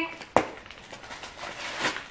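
Handling of a quilted leather purse with a gold chain strap: a single sharp click about a third of a second in, then soft rustling as the bag is opened and its contents are handled.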